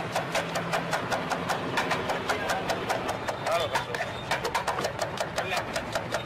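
Kitchen knife chopping a red onion on a wooden board: rapid, even knocks of the blade hitting the wood, about six a second.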